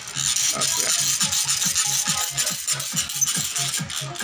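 Electroplating bath fizzing as the clipped earring is lowered into the yellow plating solution under current: a dense, steady hiss that eases off near the end. Background music with a steady low beat plays underneath.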